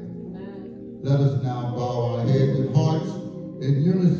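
A man's voice in a chanting, sing-song delivery that starts about a second in, over soft sustained background music.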